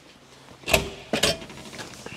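A door being opened to go outside: two clunks about half a second apart, the second with a brief metallic ring.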